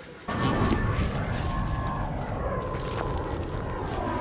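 Steady low rumbling noise on the microphone, starting abruptly about a third of a second in, with faint thin high tones over it.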